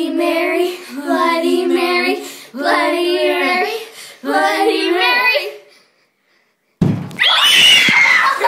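Children's voices chanting in a sing-song rhythm in short repeated phrases, stopping about six seconds in. After a second of silence, a sudden loud burst is followed by high-pitched screaming near the end.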